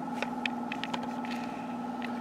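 Steady low hum of workshop background noise, with a few faint clicks.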